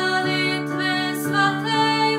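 Slow Czech worship song: a voice singing a melody in long held notes over sustained instrumental accompaniment.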